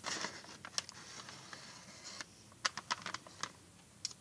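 Crumpled kraft-paper packet being opened and handled, soft rustling and then a scatter of short crinkly crackles a little past halfway.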